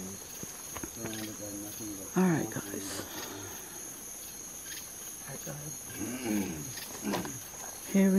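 A steady, high-pitched chorus of night insects chirping without a break.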